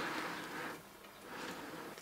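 Quiet pause with faint room tone and no distinct sound event.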